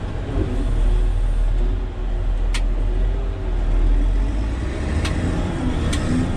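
Caterpillar 120K motor grader's diesel engine running, heard from inside the cab as a heavy, steady low rumble. A sharp click sounds about two and a half seconds in.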